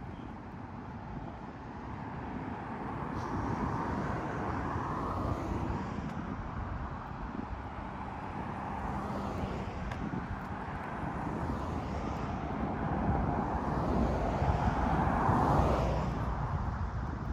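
Street traffic: cars driving past on the road, their tyre and engine noise swelling and fading several times and loudest near the end as one goes by close.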